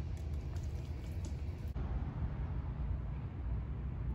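Steady low outdoor background rumble, with a few faint clicks in the first second and a half.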